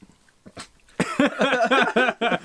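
About a second of near-silent room tone, then a loud, wavering burst of a person's voice that the recogniser could not turn into words.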